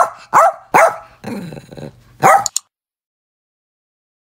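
A dog barking: three sharp barks in quick succession, a quieter, drawn-out lower call, then one more bark about two and a half seconds in.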